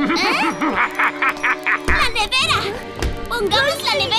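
Wordless, squeaky, warbling cartoon-character vocal chatter over background music.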